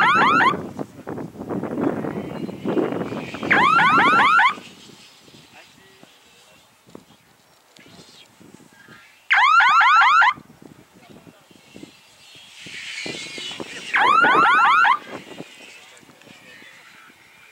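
Electronic base-line signal horn of an F3B speed task: a warbling burst of fast rising chirps, about a second long, sounding four times a few seconds apart. Each burst marks the glider crossing a base line at the end of a leg.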